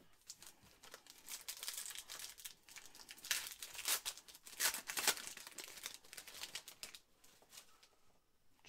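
Foil wrapper of a Panini Chronicles football card pack being torn open and crinkled by hand: a run of irregular crackling rustles, loudest around the middle, easing off near the end.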